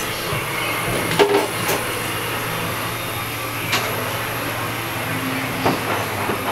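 Steady low machinery hum of a boatbuilding workshop, with a few short knocks and clatters from fit-out work, the loudest about a second in.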